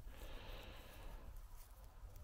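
Faint, steady background noise, close to silence, with no distinct sound standing out.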